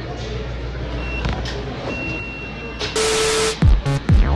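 Busy store ambience with a low hum and two short, steady high beeps. About three seconds in, a loud burst of noise gives way to electronic dance music with deep, falling bass hits.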